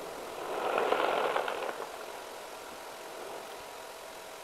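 Rushing, crackling noise of a pyroclastic flow of hot ash and rock pouring down Mount Merapi's flank. It swells about half a second in, then eases after about two seconds to a steady, lower hiss.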